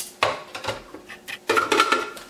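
Plastic clicks and knocks as the green chute cover is fitted onto a hot-air popcorn popper, a few spread out and then a quick cluster in the last half-second.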